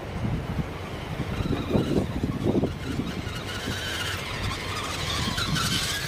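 Electric motor and gears of a radio-controlled rock crawler whining as it climbs over sand and rock, the whine rising in pitch and getting louder near the end as the truck reaches the microphone. Wind rumble on the microphone runs underneath, with a few dull knocks about two seconds in.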